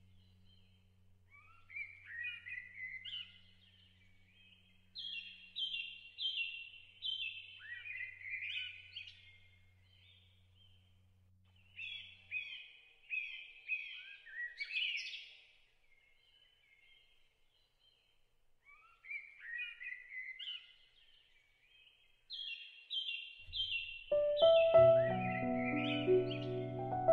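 A songbird singing in short phrases of quickly repeated notes, with pauses of a second or more between phrases. A low hum underneath dies away about halfway through, and piano music comes in near the end.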